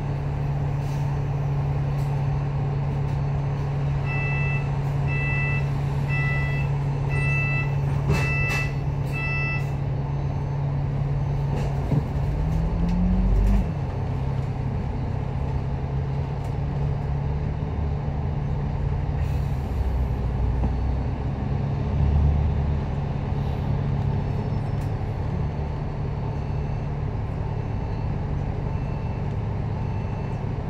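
Double-decker bus engine idling steadily, heard from on board. A few seconds in, a run of about nine evenly spaced electronic beeps sounds, and around twelve seconds an engine briefly revs up in pitch as another double-decker pulls in ahead.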